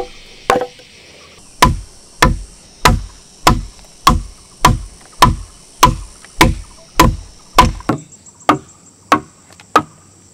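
Wooden mallet striking a wood chisel cutting a mortise in a log: a steady run of blows about one and a half a second, after a short pause near the start. The last few blows are softer. Insects buzz faintly underneath.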